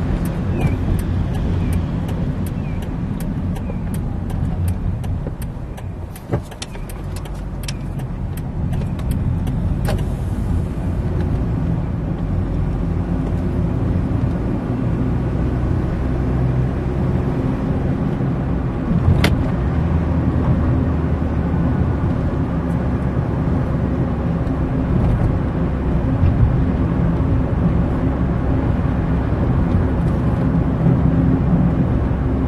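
Car engine and road noise heard from inside the cabin while driving. The sound dips about six seconds in, then builds as the car picks up speed. A run of sharp clicks is heard over the first ten seconds.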